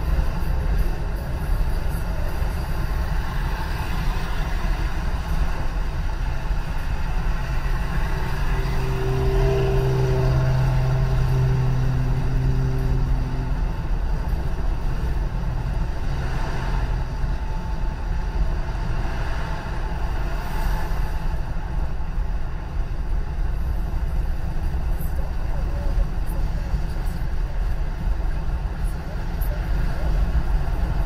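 Steady road noise inside a car cabin at freeway speed: the low rumble of tyres and engine. A steady low hum stands out for several seconds about a third of the way in.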